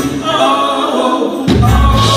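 Live singing with the guitar dropped out, voices carrying the melody alone, then the acoustic guitar comes back in about a second and a half in.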